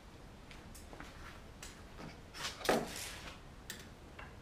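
A bar clamp and steel rule being handled on a workbench top: a few light clicks, then a louder clatter and scrape about two and a half seconds in, and one more click near the end.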